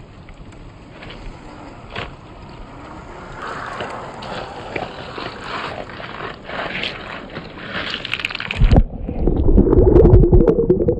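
Water splashing and sloshing around a 1/10-scale Traxxas TRX-4 crawler as it wades into a shallow rocky river, growing louder as it goes deeper. Near the end the sound turns suddenly muffled and low, as the microphone goes under the water beside the truck.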